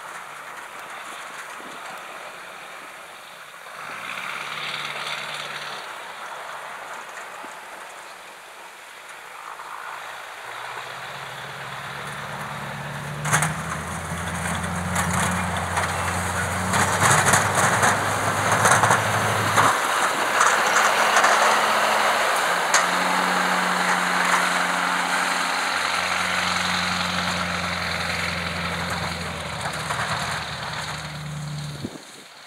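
Duramax LB7 6.6 L diesel engine of a Silverado 3500 dually working while it pushes snow with a V-plow. It is faint at first and grows loud from about ten seconds in as the truck comes close, its note stepping up and down, over a rough scraping hiss of plow and snow.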